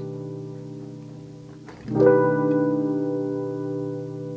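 Keyboard played with an electric piano voice: a sustained chord fading, then a B augmented seventh sharp-nine chord (B, E♭, A, D, G, B) struck about two seconds in and left to ring and decay.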